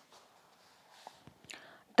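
Quiet room with a few faint, soft clicks, then a short intake of breath near the end, just before speech resumes.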